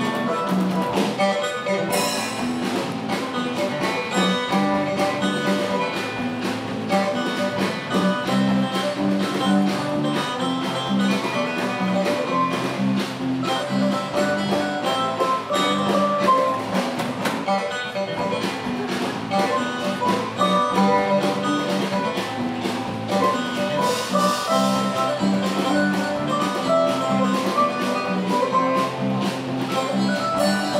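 Fiddle band playing a tune, with acoustic guitars and mandolin strumming along and a drum kit keeping a steady beat.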